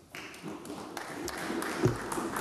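Scattered applause of hand claps beginning just after the speech ends and growing, with a single thump near the end.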